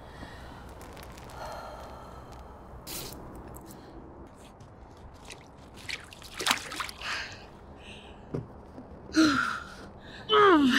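A woman lowering herself into ice-cold lake water: a few splashes and drips as she climbs in, then a sharp, falling gasp near the end at the shock of the cold.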